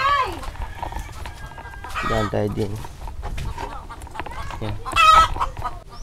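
Free-roaming chickens clucking, with one loud, high-pitched call about five seconds in.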